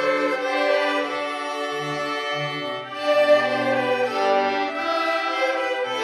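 A children's string ensemble of violins, violas and cellos playing a classical piece live, with bowed melody notes moving over a sustained cello bass line.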